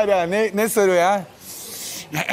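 A man's voice drawn out with a wavering pitch for about a second, then a breathy hiss.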